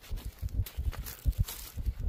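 Footsteps on dry leaf litter and dead grass, with irregular low thumps.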